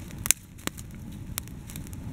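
Wood campfire crackling, with about four sharp, scattered pops over a low, steady rumble of flame.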